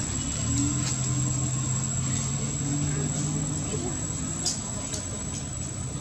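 A motor vehicle's engine running with a low steady hum that fades after about four seconds, over a thin high steady tone.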